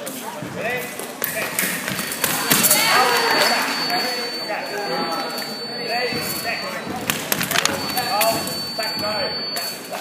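Chatter of many voices echoing in a large sports hall, broken by scattered thuds and clicks, with a thin steady high tone that sounds twice.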